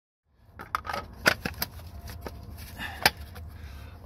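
Hands handling small plastic parts in a car's front compartment: a run of sharp clicks and taps over a steady low rumble.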